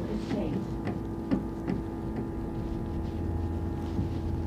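Steady hum inside a moving double-decker bus, with a few light knocks. A low rumble strengthens about three seconds in.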